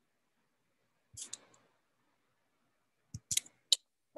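Computer mouse clicking: a quick pair of sharp clicks about a second in, then three more near the end.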